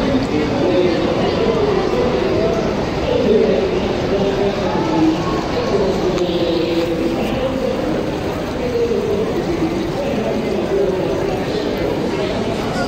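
Crowd of people talking at once, a steady babble of overlapping voices with no single speaker standing out.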